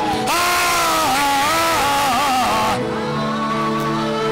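A man singing a loud, strained worship phrase into a microphone over live accompaniment. A little under three seconds in, the loud voice drops away and held keyboard chords come through with quieter singing.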